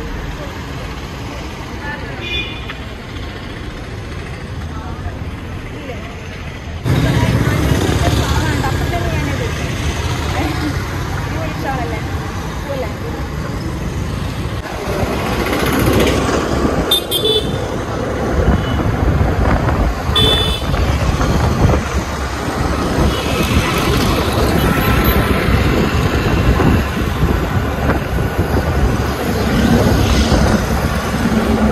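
Road traffic heard while riding a scooter: a steady rush of engine and wind noise, which steps up suddenly about seven seconds in. Vehicle horns give short toots three times.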